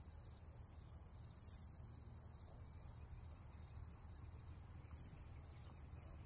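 Faint crickets chirring steadily, an even high pulsing trill, over a low steady rumble.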